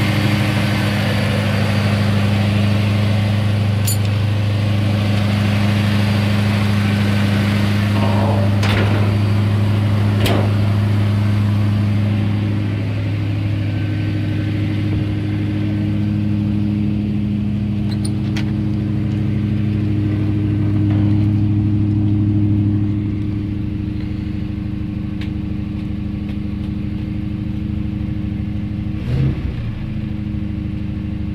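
1962 Mercury Monterey's 352 FE V8 idling steadily, with a few light clicks over it; a little quieter for the last several seconds.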